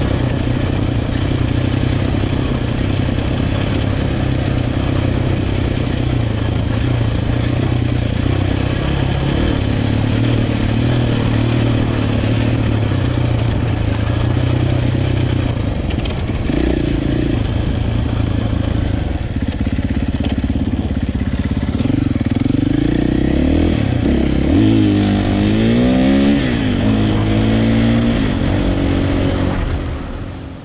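Husqvarna 501 enduro motorcycle's single-cylinder four-stroke engine running under way, steady at first. In the last few seconds its pitch rises and falls repeatedly as the throttle is opened and closed.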